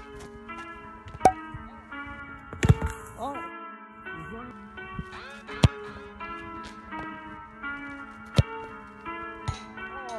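Background music with a melody, over which a football is kicked hard several times, each kick a sharp thud a few seconds apart.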